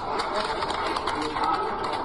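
A man's recorded speech played back through a smartphone's small speaker and picked up by a nearby microphone.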